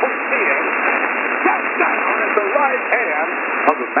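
A man preaching, heard through a shortwave receiver in upper-sideband mode: his voice is squeezed into a narrow middle band with no deep bass or high treble, over a steady static hiss.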